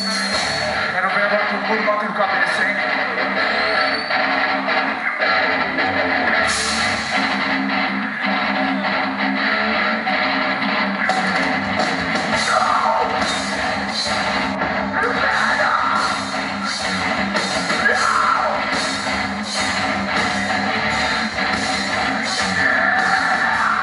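Metalcore band playing live: distorted electric guitars and drums at full loudness, with a steady, regular drum beat marked in the second half.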